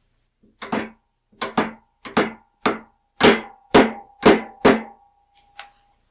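A rubber mallet tapping a sizing die down into its seat in a Star Lube-Sizer: about ten blows, the first few in quick pairs, growing louder toward the middle. A faint metallic ring from the press hangs on after the later blows.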